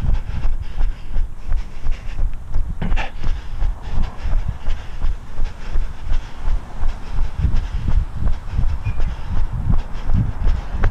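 A runner's footfalls on an asphalt road, jolting the body-worn camera in a steady rhythm of about three dull thuds a second, over a low rumble of wind on the microphone.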